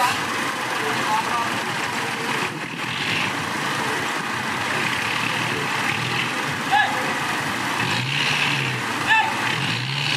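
Loaded dump truck's diesel engine running steadily as the truck sits backed into the fill. A deeper hum joins in about eight seconds in.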